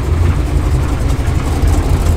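Engine of a white single-cab Ford OBS prerunner truck idling close by: a loud, steady, deep rumble.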